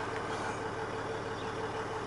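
Land Rover Discovery's 3.0-litre SDV6 diesel V6 idling steadily, heard from inside the cabin.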